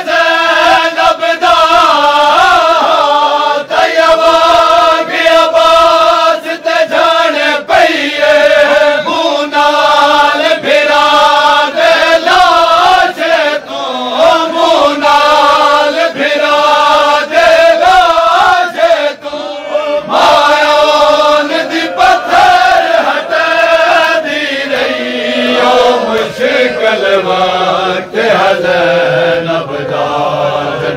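A crowd of men chanting a Punjabi noha, a mourning lament, in unison, with sharp hand slaps on the chest (matam) keeping time.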